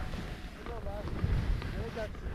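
Wind buffeting the microphone of a skier's body-worn camera during a descent through deep powder: a gusty low rumble over the hiss of skis cutting snow, with a few faint short chirps.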